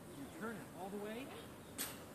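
Faint voices talking in the distance, and near the end one short, sharp swish.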